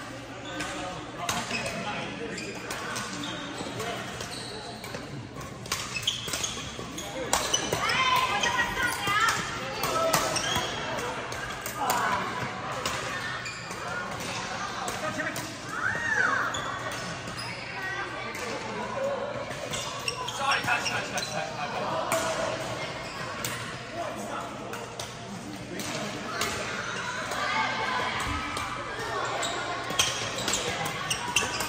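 Badminton play in a large echoing hall: repeated sharp racket-on-shuttlecock hits and footwork on the court, with voices from players on the surrounding courts.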